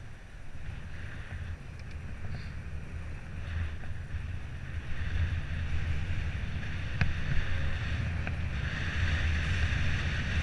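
Wind rushing over the microphone of a camera on a moving bicycle, over a low tyre rumble on the road. It grows louder as the bike gathers speed. There is one sharp click about seven seconds in.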